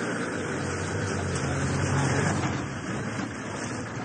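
Military 4x4 driving fast over a muddy track: engine running under load, with the tyres churning and splashing through mud and water. The sound swells around the middle.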